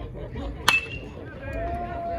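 Metal baseball bat hitting a pitched ball: one sharp ping with a brief ringing tone, about two-thirds of a second in. Voices shouting follow near the end.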